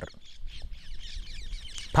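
Birds chattering and calling in the background, a dense run of many short, quick chirps.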